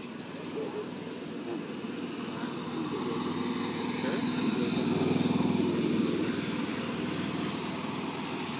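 An engine running steadily nearby, a low drone that swells louder toward the middle and then eases off a little, like a motor vehicle passing.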